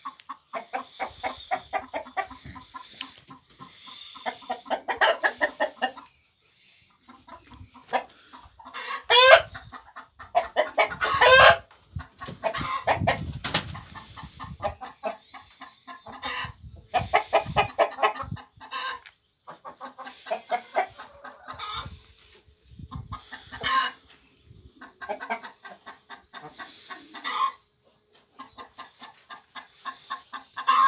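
Chickens clucking in rapid runs of calls, again and again, with two loud short rising calls about nine and eleven seconds in. A steady high-pitched tone runs underneath.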